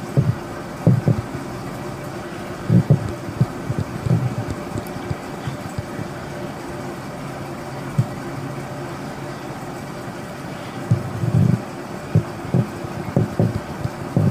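Steady room hum, broken by scattered low thumps and bumps of handling noise, with a cluster of them near the end.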